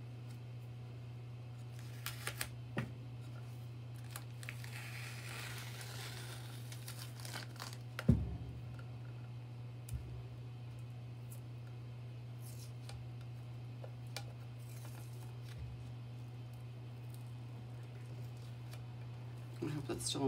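Painter's tape being peeled off a glass tray and crumpled, with crinkly rustles and a longer stretch of peeling and tearing noise early on. About eight seconds in comes a single sharp thump, the loudest sound, with a smaller knock soon after, over a steady low hum.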